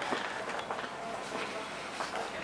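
Pedestrian street ambience: footsteps on stone paving with faint voices of passers-by.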